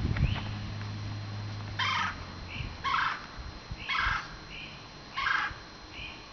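Four short, high mewing calls about a second apart, from an animal or bird, with two fainter short notes between them; a low steady hum fades out just before the first call.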